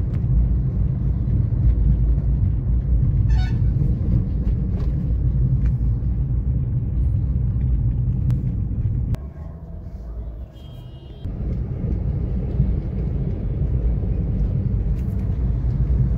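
Steady low road and engine rumble heard from inside a moving car. The rumble drops away for about two seconds a little past the middle, while a short high beep sounds.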